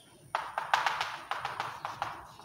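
Chalk tapping and scratching against a chalkboard in a quick run of sharp knocks, starting about a third of a second in, as points are marked on a graph.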